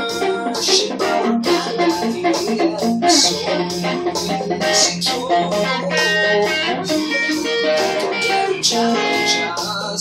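Caparison Apple Horn Jazz electric guitar, amplified, played without a break: a busy run of picked single notes and chords.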